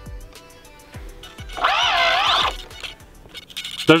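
Micro servos in a small electric RC plane whining as the transmitter sticks move the control surfaces. Near the middle comes about a second of high-pitched whine whose pitch wavers up and down, over faint background music.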